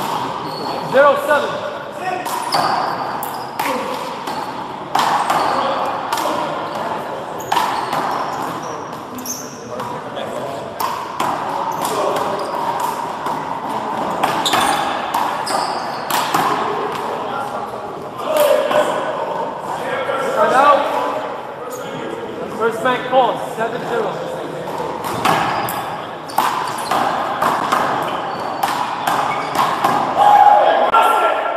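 Repeated sharp smacks of a small rubber handball struck by hand and hitting the wall and floor during a doubles rally, with voices talking underneath, in an echoing hall.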